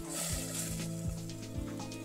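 Diced tomatoes sizzling softly as they sauté in olive oil in a stainless-steel pot, stirred with a silicone spatula, under background music with sustained low notes. The hiss is strongest in the first half-second.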